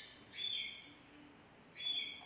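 A bird calling: short, high chirps, one about half a second in and another near the end.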